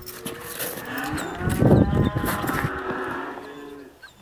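A cow mooing: one long call of about three seconds, loudest in the middle.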